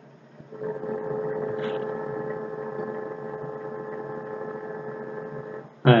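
A steady humming tone with overtones, starting about half a second in and held evenly for about five seconds before it stops.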